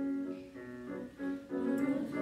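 Piano accompaniment playing a short passage of held chords between the choir's sung phrases.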